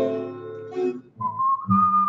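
Acoustic guitar strummed, and from about a second in a man whistling the song's melody over it in clear, steady high notes.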